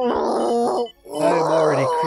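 Cartoon monster Grimace, voiced by an actor, screaming in labour pains: two long loud cries, the second lower-pitched than the first, with a short break between them.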